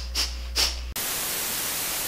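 Two short puffs of breath through the nose, then about a second in the sound cuts suddenly to steady, loud TV-style static hiss.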